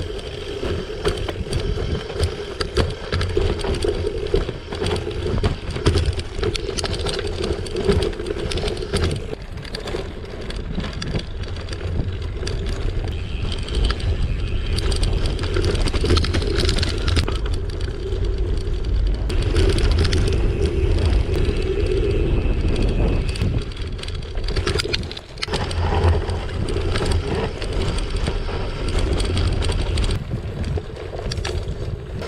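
Gravel bike riding over a rough dirt and stone trail, heard from the handlebar: continuous tyre noise on the loose surface, with the bike rattling over bumps.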